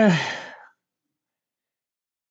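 A man's drawn-out hesitation 'uh' fading out in the first moment, then dead silence.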